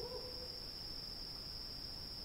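Faint, steady high-pitched trilling of crickets in a night-time ambience.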